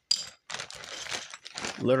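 A sharp click, then about a second of small plastic building bricks clicking and rattling against each other in a loose pile, with speech starting near the end.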